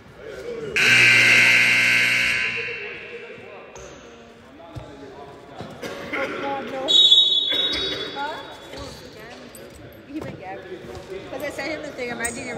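Gym scoreboard buzzer sounding for about two seconds, loud and ringing on in the hall, then a short high whistle about seven seconds in. A basketball bounces and voices carry in the background.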